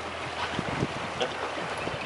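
Steady wind rushing over the microphone, mixed with the wash of the sea around the boat.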